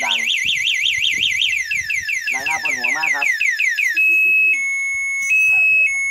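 Electric tricycle's anti-theft alarm, set off by a hard knock, sounding loudly and cycling through its patterns. It starts with a fast warbling siren, changes to repeated falling chirps, then about two-thirds of the way through switches to a steady two-tone signal alternating high and low.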